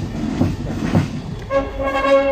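Military marching band: a steady drum beat in march time, about two beats a second, then the brass section comes in with held chords about one and a half seconds in.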